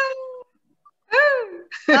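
A woman's voice making two drawn-out, wordless exclamations, each rising and then falling in pitch, about a second apart, followed by speech starting near the end.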